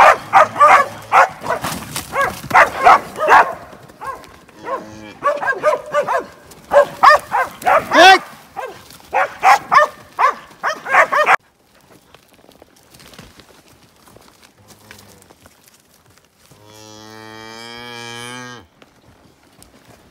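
Cows and calves bawling over and over in a busy stretch that cuts off abruptly about eleven seconds in. Near the end comes a single long, low moo lasting about two seconds.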